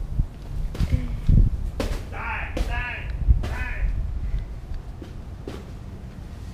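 Bare-fist punches landing on a hanging papier-mâché piñata: several separate dull knocks spread over a few seconds, with shouting between them.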